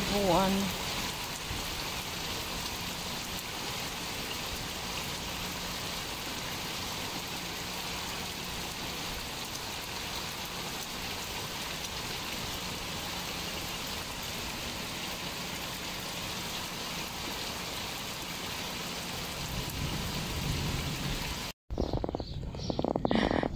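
Steady rain falling on a garden and the surface of a swimming pool, an even hiss at a constant level.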